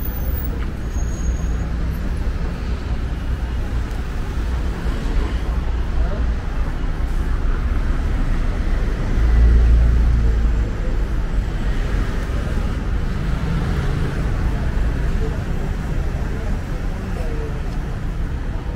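Street ambience of buses and traffic: a steady low engine rumble with people talking in the background, the rumble swelling loudest for a second or so about nine seconds in.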